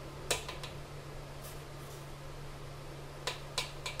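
A small plastic spoon clicking and scraping against a steel plate while mixing crumbled chhena: a sharp click about a third of a second in, two lighter ones just after, then three more clicks near the end. A steady low hum runs underneath.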